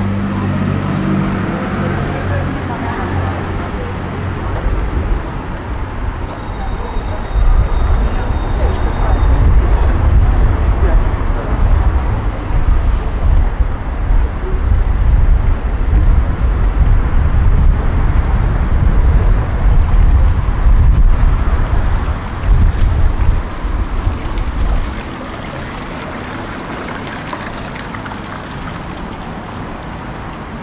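Wind buffeting the microphone in a loud, uneven low rumble from about seven seconds in until about five seconds before the end, over street ambience. Passers-by can be heard talking near the start.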